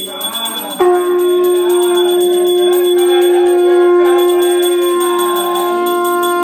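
A conch shell (shankh) is blown in one long, steady, loud note that starts suddenly about a second in and is held throughout. Underneath, a hand bell rings rapidly and people sing an aarti.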